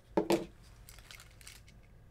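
A small hand-sanitizer holder being pulled free of its packaging, with two short crackles just after the start, then a few faint clicks.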